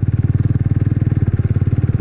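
Kawasaki W175's single-cylinder engine running at low rpm under way, a steady rapid pulsing beat from the exhaust.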